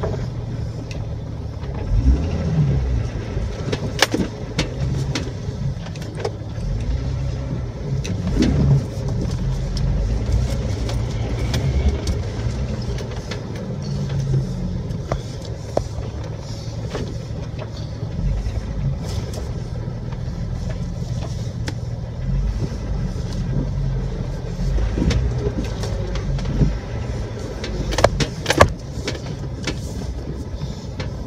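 Jeep Wrangler TJ driving slowly over a rough dirt trail: a steady, uneven low engine and drivetrain rumble, with occasional sharp knocks and rattles and a pair of louder knocks near the end.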